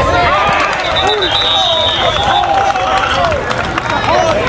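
Outdoor voices of players and onlookers on a football sideline, overlapping calls and chatter with no clear words. About a second in, a thin high tone is held for over a second.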